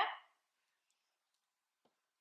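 Near silence: room tone, with one faint tap near the end.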